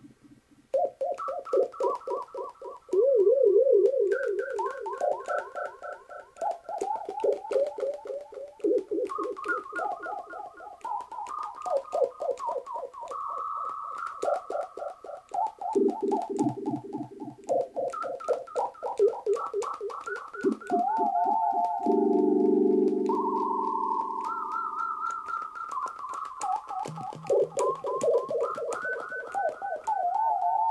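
One-button synthesizer programmed on an STM32F4 Discovery board, making electronic siren-like tones through a delay effect. Warbling tones jump up and down between pitches, each note overlapping its own repeating echoes.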